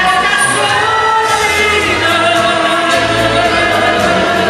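A woman singing a song into a microphone over amplified instrumental accompaniment, holding long notes that glide in pitch.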